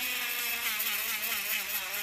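Handheld electric engraving pen buzzing steadily as its tip grinds a star into stainless-steel cutlery through a plastic stencil, with a constant low hum under a high grinding whine, like a dentist's drill; it doesn't sound the most pleasant.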